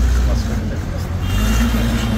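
A steady, low mechanical hum, like a running engine, with people's voices in the background.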